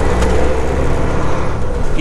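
Semi truck's diesel engine running as the truck drives slowly, heard from inside the cab as a steady low drone with road noise.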